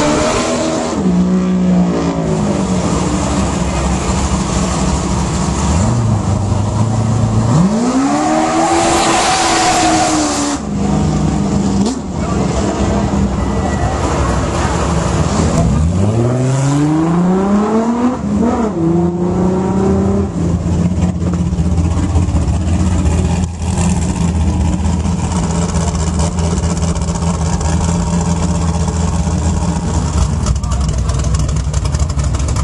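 Off-road racing buggy engines idling loudly, with repeated rev-ups: one revs up and drops back about a third of the way in, another climbs in revs around the middle, over a steady low idling drone.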